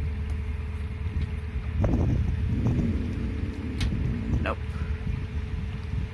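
Narrowboat diesel engine running steadily under way, a continuous low rumble with a steady hum.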